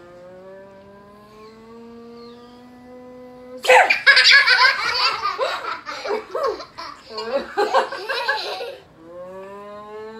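A woman's long drawn-out vocal note, slowly rising in pitch for about three and a half seconds to build anticipation, breaks into loud squealing laughter from young children that lasts about five seconds. Near the end the drawn-out rising note starts again.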